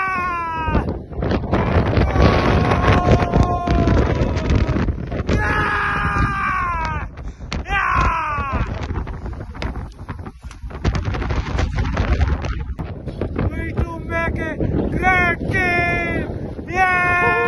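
A man shouting outdoors in long, loud calls that fall in pitch. Wind buffets the microphone in between the calls.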